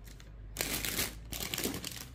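Clear plastic packaging crinkling as bagged glitter ornaments are handled, a crackly rustle that starts about half a second in.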